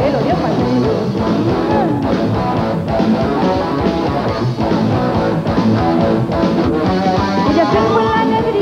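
Live rock band playing an instrumental passage of a folk-rock song, with electric guitars, bass, keyboards and drums and no singing.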